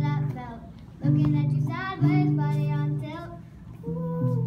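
A girl singing while strumming an acoustic guitar. Chords are struck about a second in and again about two seconds in, and the sound dies down briefly before the next phrase near the end.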